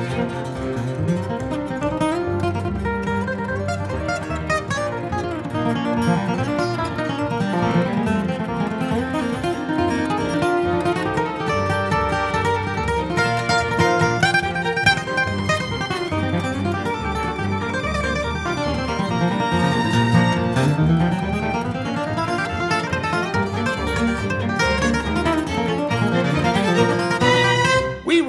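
Instrumental break: a steel-string acoustic guitar picks an upbeat lead over a small string ensemble of violins, viola, cello and double bass.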